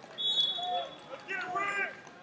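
A referee's whistle blown once: a short, steady, high blast of under a second, ending the bout at an 8–0 technical superiority. Raised voices shout after it.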